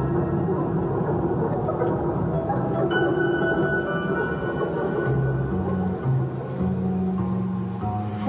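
Ambient instrumental music from a Roland GR-55 guitar synthesizer: long held synth tones over low notes that step slowly from one pitch to another.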